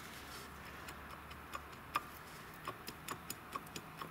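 Faint, irregular light clicks as the water pump pulley is worked by hand, the sign of a water pump that has broken apart inside. The clicks come mostly in the second half.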